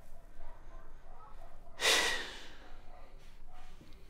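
A man's single heavy exhale, a sharp sigh about two seconds in that is loudest at its onset and trails off over about half a second, a reaction of dismay.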